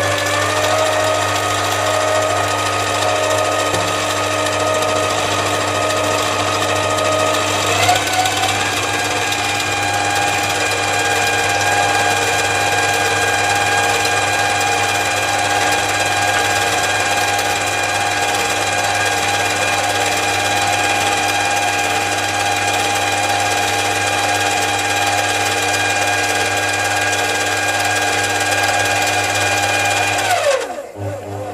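7x14 mini lathe running, with a steady whine from its motor and gear drive over a low mains hum. The whine rises as it spins up at the start, climbs again to a higher pitch about eight seconds in, then holds steady.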